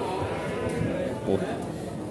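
A goat bleating among tethered goats, with people talking around it.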